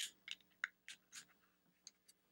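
Faint plastic clicks and scrapes of a USB plug being pushed into a small handheld USB tester and the tester being handled: about six short ticks, the first the loudest.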